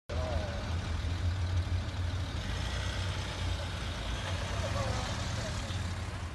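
A motor vehicle's engine running close by as a steady low rumble, with faint voices in the background.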